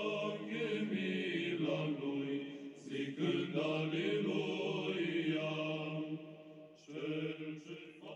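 Background music of slow vocal chant with long held notes, growing quieter near the end.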